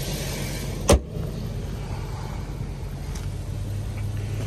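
An Infiniti G37x's hood is shut with a single sharp slam about a second in, over the steady low hum of the car's 3.7-litre V6 idling.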